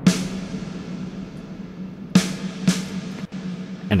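A drum kit playing back through Valhalla VintageVerb's Chamber algorithm with room size at 100% and a decay of about 7.9 seconds. A drum hit comes at the start and two more just after two seconds, each followed by a long, washy reverb tail, over a steady low note.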